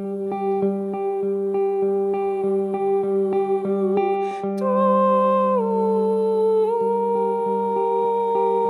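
Ensemble music for voice, electric guitar and tabla: a steady low drone under an even pulse of short plucked notes, about three a second. About halfway through, a woman's voice comes in on a long held note that steps down in pitch and then holds.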